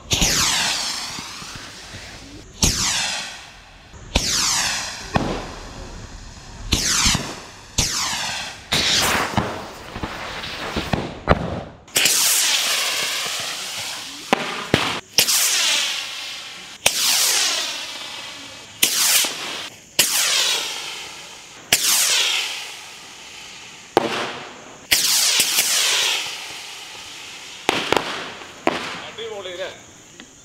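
Diwali sky rockets firing one after another from a rack of pipes, about twenty launches in quick succession, some overlapping. Each is a sudden hissing whoosh that fades over a second or two as the rocket leaves.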